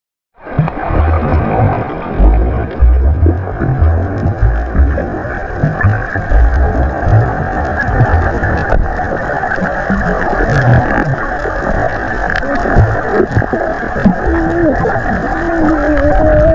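Muffled underwater sound picked up by a submerged action camera: a steady dull rumble with irregular low thumps and, near the end, a few muffled voices from the swimmers above.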